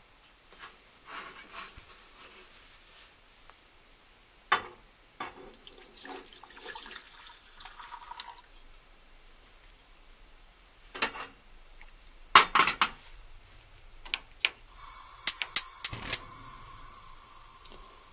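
Cooking liquid poured from a ceramic baking dish into a stainless steel saucepan, with knocks of cookware set down on the stove's cast-iron grates. Near the end a gas stove's igniter clicks several times in quick succession over a steady hiss of gas as the burner is lit.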